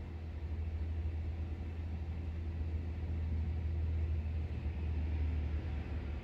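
A steady low rumble under a faint hiss.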